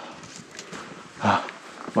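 A short, breathy grunt or gasp from a person out of breath while climbing a long flight of stone steps, about a second in.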